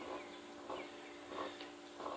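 Quiet outdoor background: faint, brief chirps of small birds over a steady low hum.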